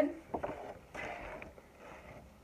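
A sheet of plain white paper being handled as it is lifted and shown folded: a couple of light taps about a third of a second in, then a soft paper rustle around a second in.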